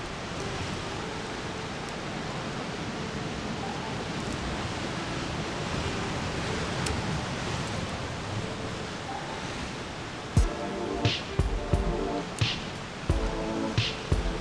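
Steady wash of ocean surf. About ten seconds in, background music with sharp percussive hits comes in over it.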